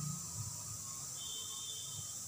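Quiet room tone with a steady faint hiss; a faint, thin, high whistle-like tone comes in a little past the middle and holds.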